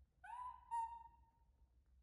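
Baby macaque giving two high coo calls, the first short and rising in pitch, the second longer and steady before fading: an infant monkey calling for its mother.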